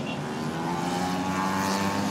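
Small 70 cc racing motorcycle engines running at high revs as the bikes pass, their pitch rising steadily as they accelerate.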